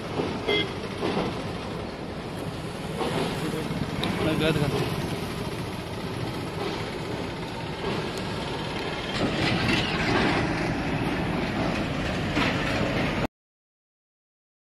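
Indistinct voices over a steady, noisy rumble, cutting off abruptly near the end.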